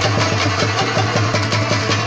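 Afghan rubab played fast in a rapid, even run of plucked strokes, with tabla accompaniment underneath.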